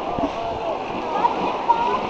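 Sea water splashing, with several people's voices talking and calling in the background.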